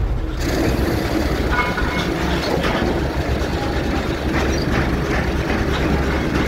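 Diesel engine of a Kato 50-ton mobile crane running steadily, a low drone heard from inside the carrier cab.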